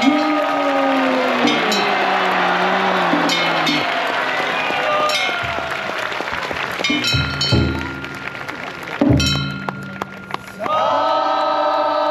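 Japanese festival music from a Nagasaki Kunchi river-boat float: chanting or singing voices over high ringing metallic strikes that come every second or two, with a held pitched tone near the end.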